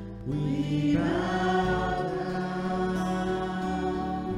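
Live church worship band playing a slow worship song on acoustic and electric guitars, with a new chord about a quarter second in and voices singing from about a second in.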